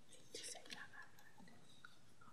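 Near silence: room tone, with faint, brief whispered speech about half a second in.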